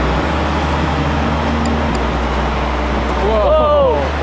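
Electric rotors of a foam RC Helicarrier model, spinning inside round shrouds in flight, with a steady, loud rushing whir.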